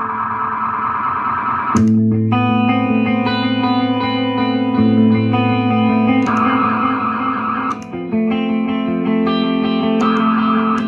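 Clean electric guitar chords played through a JCraft Push Delay analog delay pedal set for ambient washes rather than distinct echoes. New chords are struck about two seconds in and again near eight seconds, and a warbling high wash swells in around six seconds.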